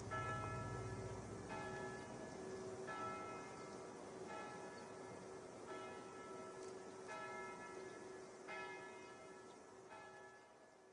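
A church bell tolling slowly, one stroke about every second and a half, each ringing on until the next, and the whole fading away toward the end. A faint low hum underneath stops about a second and a half in.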